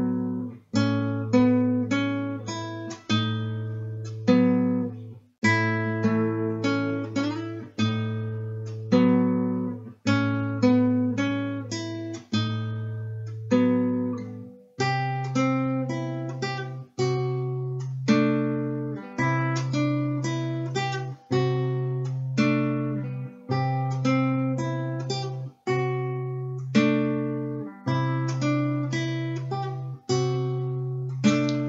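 Classical guitar played fingerstyle: a slow piece with a bass note roughly every two seconds under picked chord notes, the bass moving up to a higher note about halfway through.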